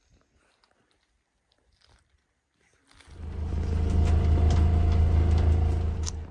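Near silence for about three seconds. Then a sailboat's inboard engine starts being heard, running steadily and loudly with a low pulsing drone, as heard from aboard the boat.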